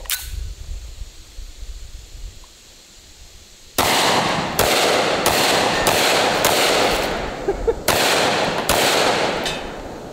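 Desert Eagle .50 AE semi-automatic pistol fired in quick succession, a full magazine dump: about eight loud shots, one every two-thirds of a second or so, starting about four seconds in, each followed by a short echo.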